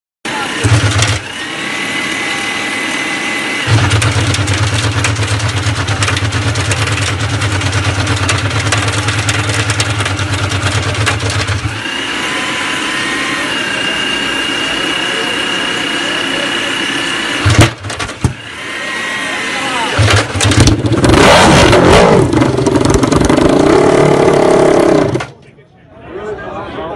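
Ducati Desmosedici MotoGP V4 engine started on a rear-wheel roller starter: a long steady low drone from the starter rig spinning the rear tyre, then the engine runs and is revved up and down near the end, loudest there, before the sound cuts off suddenly.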